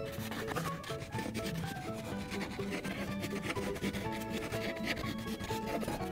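A wax crayon rubbing back and forth on paper in quick, continuous scribbling strokes, colouring in a large area.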